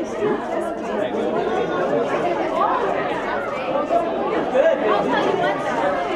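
Many people talking at once: a steady babble of overlapping voices with no single clear speaker.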